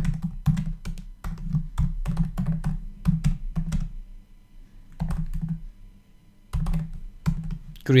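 Typing on a computer keyboard: runs of quick keystroke clicks, with a pause of about a second midway before the typing resumes.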